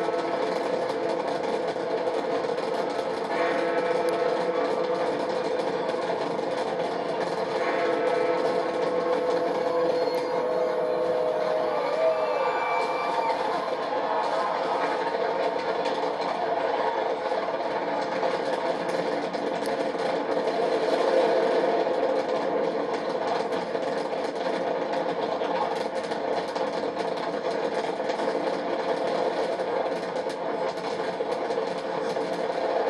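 A big fireworks display heard through a television speaker: a continuous, steady rumble and crackle of many shells with no pauses.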